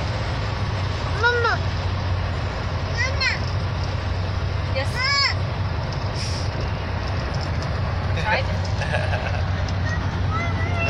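Steady low road and engine drone heard inside a moving car's cabin, broken four times by short high-pitched voice sounds, about one, three, five and eight seconds in.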